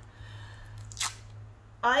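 A short, sharp rip of duct tape being pulled from the roll, about a second in.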